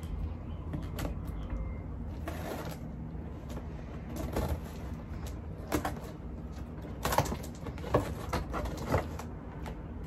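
A cardboard shipping box being handled and opened: scattered rustles, scrapes and clicks from the cardboard and its tape at irregular moments, over a steady low hum.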